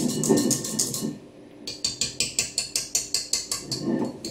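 Wire whisk beating in a stainless steel mixing bowl, stirring beaten egg whites into a butter and yolk batter: quick rhythmic strokes on the metal, a short pause about a second in, then a steady run of about seven strokes a second.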